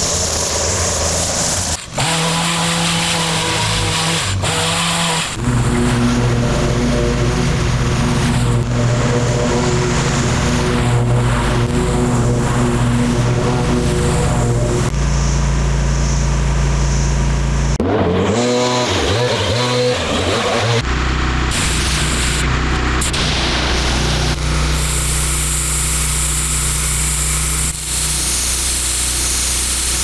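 Gas-powered lawn-care equipment running in a series of abrupt cuts: a string trimmer at the start, then stretches of steady engine hum, with some changes in engine speed a little past the middle. Near the end a pressure washer runs, a high hiss of spray over its engine hum.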